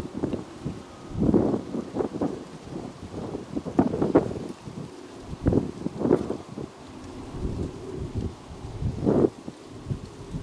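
Wind buffeting the camera microphone in irregular gusts, heard as uneven low rumbling bursts.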